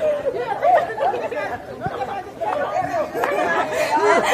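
Several high voices chattering and talking over one another, too jumbled for words to be made out.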